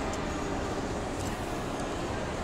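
Steady background noise, with a few faint clicks of plastic action-figure parts being moved by hand.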